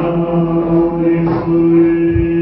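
Yakshagana bhagavata singing, holding one long note at a steady pitch.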